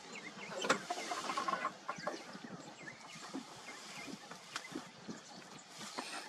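Maasai giraffe browsing a bush: scattered sharp snaps and rustling of twigs and leaves as it strips the branches, the loudest snap about a second in, with short bird calls around it.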